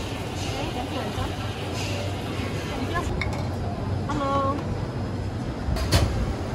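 Busy hawker-stall kitchen ambience: indistinct background voices over a steady low rumble, with a short pitched call about four seconds in and a sharp knock near the end.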